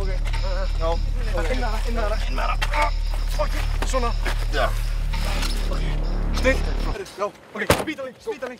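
Indistinct voices over a steady low hum, which cuts off abruptly about seven seconds in. A single sharp knock follows shortly before the end.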